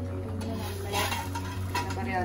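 Metal spatula and an aluminium lid knocking and scraping against a dosa pan on a gas stove while neer dosa cooks, with a few light clinks.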